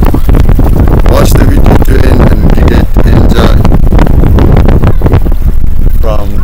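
Wind buffeting the microphone: a loud, steady low rumble, with faint voices under it.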